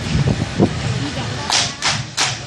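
A group of performers clapping hands in unison: two sharp claps in quick succession near the end, over a low murmur of voices.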